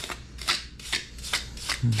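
Steel putty knife scraping and smoothing wet premixed cement-sand mortar over a tiled floor, about five short scraping strokes.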